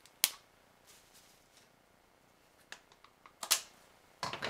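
A plastic supplement tub and its sealed lid being handled and worked at while trying to open it: a sharp plastic click about a quarter second in, a few faint ticks, then a louder short crackle of clicks near the end.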